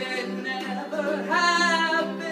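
A man singing along to a small acoustic guitar, the voice swelling into a long held note about halfway through.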